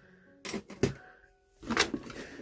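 Small plastic toy figures knocking and clicking against each other as they are handled and picked from a pile: a few sharp knocks, the loudest near the end, over faint background music.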